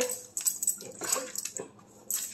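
A large curly-coated dog moving about right at the phone, with light clicking and jingling.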